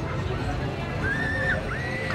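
Disneyland Railroad steam train rolling along with a low rumble. Short high-pitched squeals rise and fall over it about a second in and again near the end.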